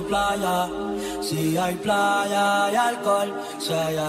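Music: the intro of a Latin pop song, with held, vocal-like notes moving in steps before the sung words begin.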